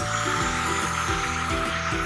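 Background music with a moving bass line.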